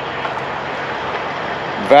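Steady traffic noise from trucks passing on a nearby road: an even hiss of tyres and engines with no single engine note standing out.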